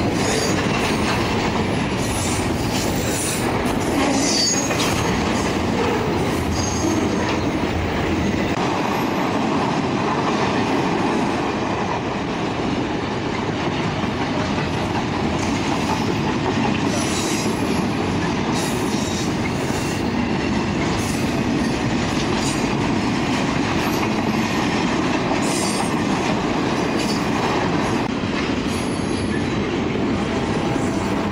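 Double-stack container train passing at close range: a steady rumble and clatter of wheels on the rails, with scattered brief high-pitched wheel squeals.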